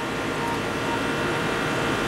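Fixed-orifice central air conditioner running steadily, its compressor and condenser fan giving an even, unbroken hum, while the system is still short of refrigerant charge.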